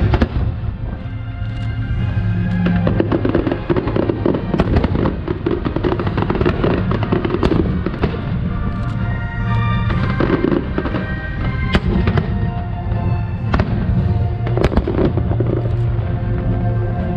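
Aerial fireworks shells bursting with many sharp bangs and crackles in quick succession, over music that plays throughout.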